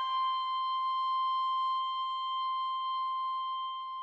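Clarinet holding one long, steady high note, the last note of a descending run.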